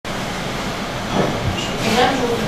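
Steady background rumble, with faint voices coming in about a second in.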